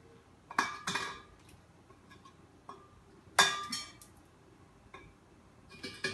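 Sharp clinks and scrapes against the glass neck of a large wine bottle as the capsule over the cork is worked off, a handful of separate knocks, the loudest about three and a half seconds in, with faint ticking between.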